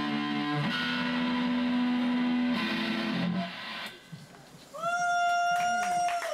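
Distorted electric guitar played through an amp, holding long sustained chords that change about every two seconds. The playing drops away about three and a half seconds in, then a single high note rings out near the end.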